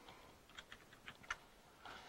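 Faint keystrokes on a computer keyboard, a short run of a few taps as the last letters of a command are typed and Enter is pressed.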